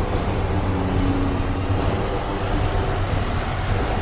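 Tense background music with a steady low drone and a held mid tone, overlaid with short hissing sweeps that recur every second or so.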